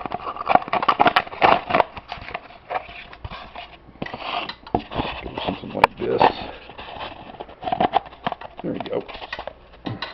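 Close-up handling noise as a model ducted-fan unit and its styrofoam fairing are fitted together by hand on a wooden table: a string of irregular clicks, knocks and rubbing.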